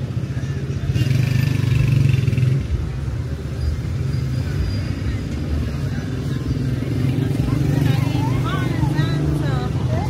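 Night street ambience of road traffic running steadily on the adjacent street, louder for a moment as a vehicle passes about a second in. Passers-by talk, with high wavering voices near the end.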